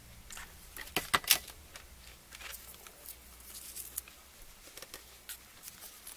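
Small clicks, taps and rustles of hands working a mini hot glue gun and a wooden clothespin, with a few sharper clicks about a second in.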